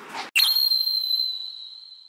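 A single high-pitched ping or chime sound effect: a sharp strike about a third of a second in, then one clear tone ringing and slowly fading out.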